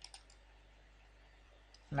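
A couple of quick computer mouse clicks right at the start, as a link on a web page is clicked, then only a faint low steady hum.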